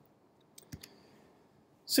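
A few faint clicks and a short soft knock about three-quarters of a second in, amid near silence. A man starts speaking just before the end.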